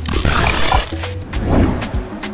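Show-intro jingle music with a heavy bass line and short hits, and a loud rushing, roar-like sound effect for most of the first second while the logo builds.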